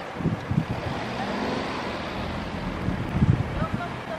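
A car driving past on an asphalt street, tyre and engine noise, with wind buffeting the microphone in gusts.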